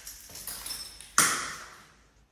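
Bathroom door being pushed open: a faint high squeak, then a sharp knock about a second in that rings briefly and fades.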